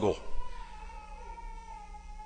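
A faint, thin, steady whistling tone that drifts slightly down in pitch and holds for over two seconds after the last spoken word.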